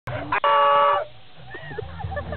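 An air horn gives one loud, steady blast of about half a second that cuts off about a second in.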